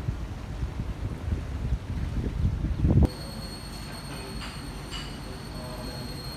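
Wind buffeting the microphone in gusty low rumbles for about three seconds, then an abrupt change to a quieter steady indoor background with a thin high electrical whine and a low hum.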